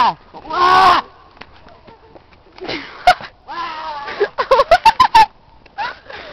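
A young person's high-pitched non-word vocal noises: a short falling call, then wavering calls, then a quick run of about eight short hoots near the end.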